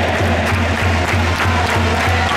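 Stadium music with a steady bass beat, about three beats a second, over crowd noise.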